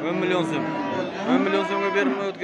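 Cattle mooing: two long moos, the first at the very start and the second beginning just over a second in.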